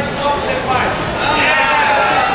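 Several people shouting and calling out over one another in a large sports hall, with a long held yell in the second half.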